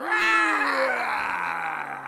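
A voice roaring like a dinosaur for a rubber hand puppet: one long, loud cry that slides steadily down in pitch.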